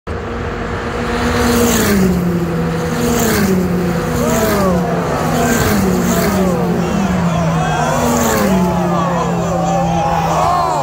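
Engines of single-seater racing cars heard from the trackside, several engine notes rising and falling in pitch as the cars approach, growing from about four seconds in. Underneath runs a steady tone that steps down in pitch and repeats about every second and a half.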